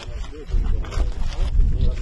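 Faint voices, with a loud low rumble that sets in about half a second in.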